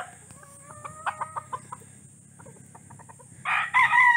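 Chickens clucking, with a rooster's crow ending at the start and another rooster starting a loud crow near the end.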